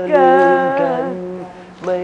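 Voices singing a phrase of a Thai pop song in long held, slowly gliding notes, more like humming than speech, fading about a second and a half in.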